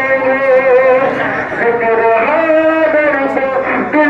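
A man reciting in a sung, melodic style into a microphone, drawing out long held notes that waver slightly in pitch, with short breaks between phrases.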